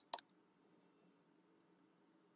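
Near silence: faint steady room tone with a low hum, after one short sharp click right at the start.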